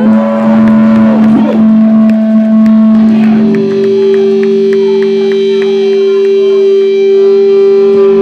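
Electric guitar feedback howling through the amplifier as a rock song is let ring out: a steady held low tone, with a higher tone bending up and down in the first second or so, then a second higher tone swelling in and held from about three and a half seconds in.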